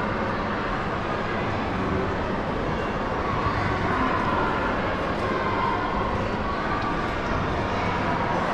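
Steady background noise of a large museum hall: an even hiss with a low hum underneath.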